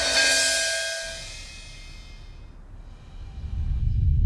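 Background score for a scene change: a cymbal wash and held notes fade away over the first second and a half, then a low rumble swells near the end.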